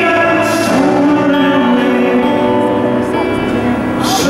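Live band music: a man singing long, held notes over acoustic guitar and piano accompaniment.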